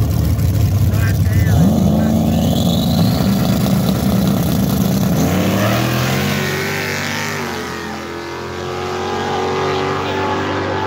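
Race car engine revving hard, its pitch climbing about a second and a half in and again about five seconds in, then holding steady.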